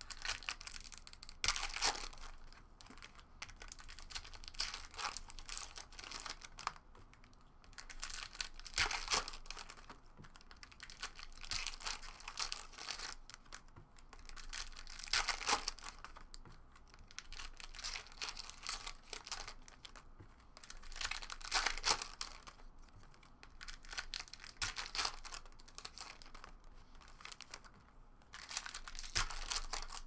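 Foil trading-card packs being torn open and crinkled by hand, with a stack of cards flipped and handled in between. The sound comes in repeated bursts every few seconds.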